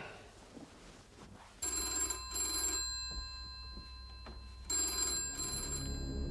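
Telephone ringing in the British double-ring pattern: two 'brring-brring' rings, the first about a second and a half in and the second about three seconds later.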